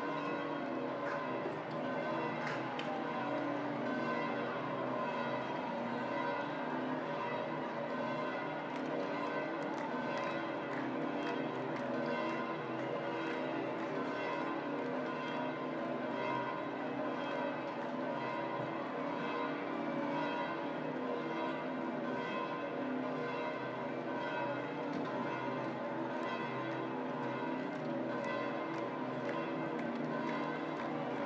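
Several large church bells pealing continuously, their many tones overlapping in a steady, unbroken ringing.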